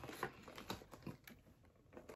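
Faint, irregular clicks and taps from a cardboard box being handled, as fingernails and fingers shift on the cardboard.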